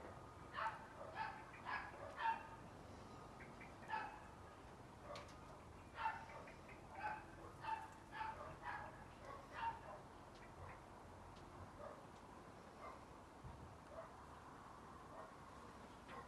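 Dogs barking faintly and repeatedly, short barks in quick runs that thin out after about ten seconds.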